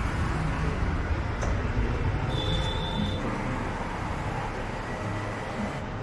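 Steady rumble of road traffic with no horns. A brief high beep sounds about two and a half seconds in.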